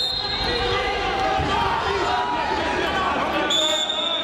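Many overlapping voices calling out in a large hall over dull thuds of wrestlers' feet and bodies on the mat. A short, high, steady tone sounds at the start and again near the end.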